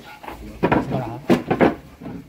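Sharp wooden knocks, three in about a second, as a Garut ram shifts in its wooden pen and bumps the boards.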